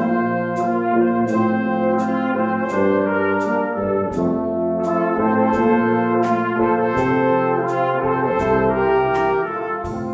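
Small brass band of cornets, trombones, euphonium and tuba playing a slow worship song in sustained chords, over a steady beat from a drum kit.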